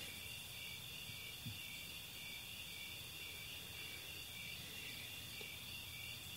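Faint, steady chorus of crickets chirring, a continuous high pulsing trill, over a low background hum.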